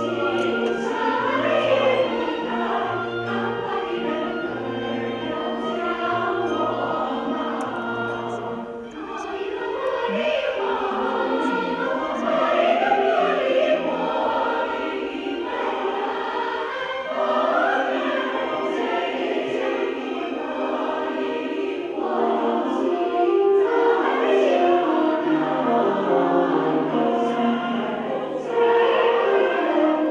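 A large mixed choir singing with orchestral accompaniment, continuous music that dips briefly about nine seconds in and grows louder near the end.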